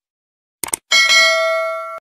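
Subscribe-button animation sound effect: a quick double mouse click, then a notification bell chime struck twice in quick succession that rings on and slowly fades.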